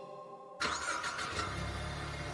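Sound effect of a car engine: a sudden start about half a second in, settling into a low, steady running sound. Faint music fades out just before it.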